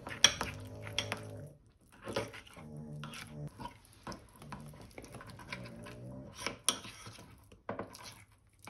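Spoon scraping and clinking against a small ceramic bowl while stirring a thick gochujang-based sauce, with repeated sharp clicks and knocks.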